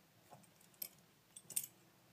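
Balisong (butterfly knife) clicking as it is swung and flipped in the hand: a few sharp metallic clicks of handles and blade knocking together, the loudest just under a second in and about a second and a half in.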